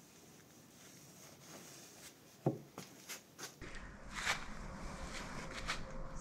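Faint knocks and clicks with some shuffling movement. One sharper knock comes about two and a half seconds in, and a low rumble joins about halfway through.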